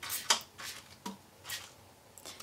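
About five short, soft scratchy noises from watercolour tools being worked, brush and water on paper and palette, each lasting a fraction of a second.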